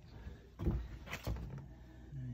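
Two dull knocks about half a second apart, footsteps on steel diamond-plate deck plates, over a steady low hum.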